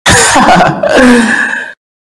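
A short, loud, breathy and raspy laugh from one character that cuts off suddenly near the end.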